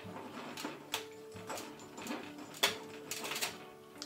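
Glass globe clinking and grating against small rocks and the glass cup beneath as it is twisted into place: several sharp clicks at irregular spacing. Soft background music with sustained notes underneath.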